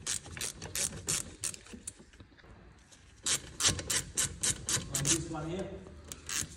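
Hand ratchet with a hex-bit socket clicking as it turns the guide pin bolt of a BMW F30's Bosch front brake caliper. Quick clicks, about five a second, come in two runs with a short pause between.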